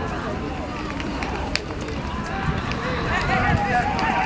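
Several spectators shouting at once, urging on the racehorses; the shouting grows louder and busier near the end. A low rumble runs underneath.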